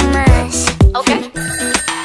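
Sped-up pop song with a beat and melody. About two-thirds of the way through, the bass and drums drop out and a few steady, thin high tones ring on.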